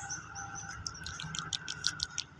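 Small birds chirping: a run of short, high chirps in the second half, over a faint low rumble.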